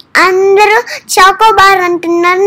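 A young girl singing in a high, sing-song voice, holding long notes in two phrases.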